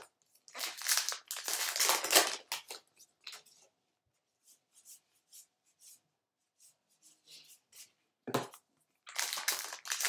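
A trading card pack's wrapper is torn open and crinkled. Then a stack of cards is thumbed through with faint soft clicks, and another pack wrapper crinkles loudly near the end.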